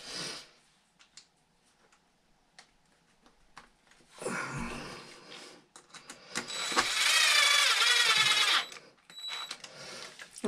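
Cordless drill/driver motor whining steadily for a little over two seconds, its pitch wavering slightly under load as it drives a bolt into an RC truck's chassis. Before it, light clicks and a brief rustle of the parts being handled.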